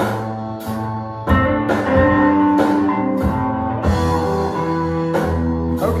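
Electric guitar played fingerstyle, the thumb picking bass notes under chords and single notes, with a new note or chord struck roughly every half second. The playing stops right at the end.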